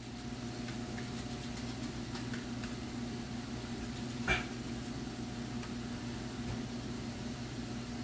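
Festival dumplings frying in a pan of oil, a faint steady sizzle with small crackles, over a steady low hum from a kitchen appliance. One short knock about four seconds in.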